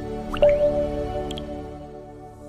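Short intro jingle for a logo animation: sustained synth notes stepping upward in pitch. A new, higher note comes in with a quick rising swish about half a second in, and a couple of light ticks follow. The tune fades gradually toward the end.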